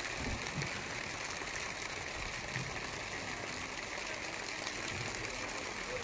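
A shallow mountain stream running over rocks and gravel, a steady rushing that stays even throughout.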